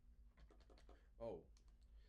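Near silence with faint clicks of the piccolo trumpet being handled, and a short voice sound just past a second in.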